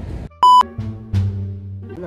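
A short, loud electronic beep, one high steady tone lasting about a quarter of a second, about half a second in. Background music with low held notes follows it.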